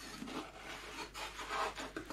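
Foam base plate rubbing and scuffing against the foam fuselage of a model jet as it is pressed and slid into place for a test fit, in irregular soft scrapes.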